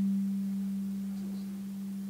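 A steady, low, pure electronic tone held on one pitch, easing off slightly in level.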